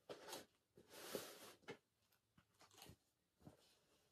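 Gift-wrapping paper crinkling and rustling faintly in several short bursts as a small wrapped gift is unwrapped by hand.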